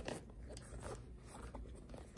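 Faint rustling and crinkling of a hand handling a leather handbag, working open its zippered middle compartment, with a few soft clicks.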